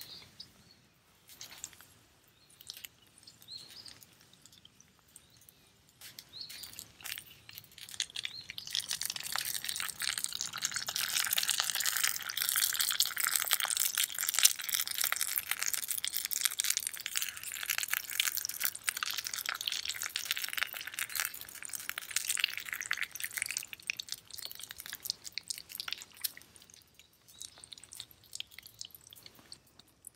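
An egg frying in a small metal pan on a can stove, sizzling with many small pops; the sizzle swells up about eight seconds in and dies away near the end, with light clinks of a spatula against the pan.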